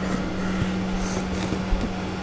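A few light clicks of 3D-printed plastic parts being moved on a workbench, over a steady low hum.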